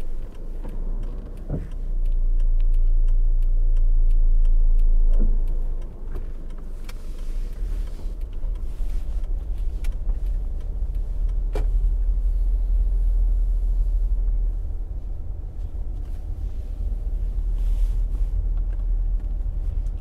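Low rumble of a vehicle driving along a road, louder for a few seconds near the start, with a few light clicks.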